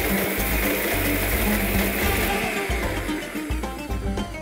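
Electric mixer grinder running, its steel jar grinding toasted whole spices (coriander, cumin, cardamom, cloves, cinnamon) into powder. The motor starts suddenly and runs steadily.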